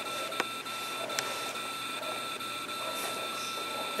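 Quiet room tone: a steady high-pitched electrical whine of several fixed tones over a faint hiss, with two faint clicks, about half a second and just over a second in.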